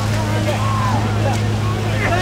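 A steady, even low engine hum, with distant voices of a crowd calling and shouting over it.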